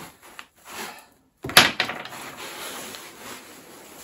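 A sudden sharp knock on wood about one and a half seconds in, then steady rustling of a quilted sleeping bag's fabric and an inflatable sleeping mat as a person lying on them shifts.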